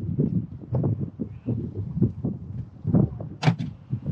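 A moving golf cart on a paved path: uneven low rumbling and thumping of wind buffeting the microphone, mixed with the cart's rattles and knocks, and one sharp click about three and a half seconds in.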